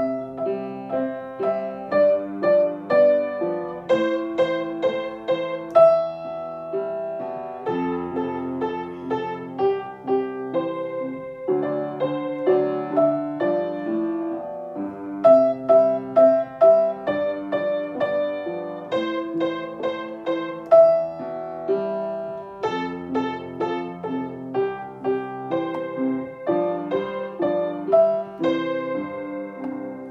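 Upright acoustic piano played four hands by two players, a continuous duet with several notes sounding at once and each note struck and left ringing.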